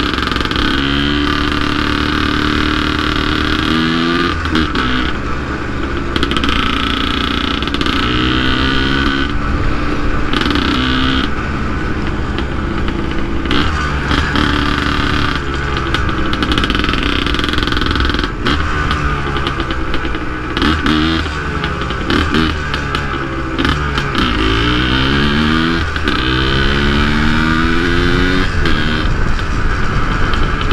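Yamaha DT 180's single-cylinder two-stroke engine heard from the saddle while riding. Its pitch climbs each time the throttle is opened and drops at each gear change, with spells of steadier running. Several quick climbs come close together in the last third.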